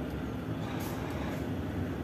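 Heavy truck's diesel engine running steadily as the truck rolls slowly, heard from inside the cab as an even, low hum.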